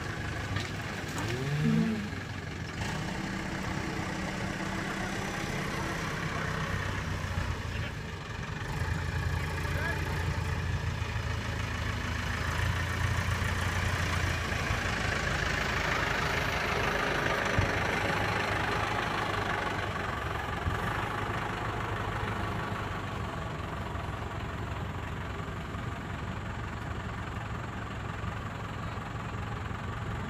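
Tractor engine running steadily, growing louder as the tractor with its front loader comes close around the middle, then easing back to a steady run.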